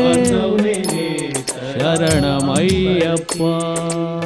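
Closing bars of a Kannada Ayyappa devotional song: a melody with bending, falling notes over steady tapping percussion ticks. About three seconds in it settles onto a long held chord.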